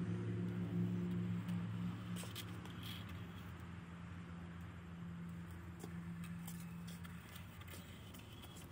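A steady low motor hum that slowly fades and stops about seven seconds in, with a few faint light scrapes over it.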